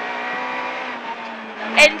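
Suzuki rally car's engine running under way at steady revs, heard from inside the cabin along with road noise. The engine eases off slightly just past a second in.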